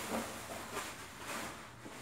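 Thin plastic rubbish bag rustling and crinkling in three short spells as trash is gathered into it.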